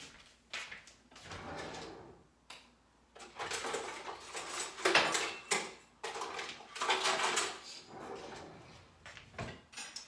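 Someone rummaging through a kitchen utensil drawer: the drawer sliding and metal utensils clattering in a run of irregular bursts, loudest about halfway through.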